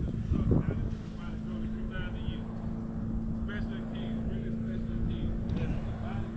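A vehicle engine idling steadily: a low rumble with a constant hum over it. Faint voices are heard in the background now and then.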